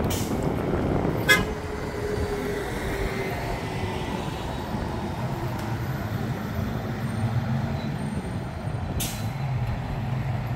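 A vintage coupe's engine running as the car drives up the road toward the listener, its low exhaust note growing louder over the last few seconds. There is a single sharp click about a second in.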